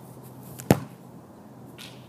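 A single sharp thud about two-thirds of a second in, a bare foot kicking a soccer ball, with a brief ring after it.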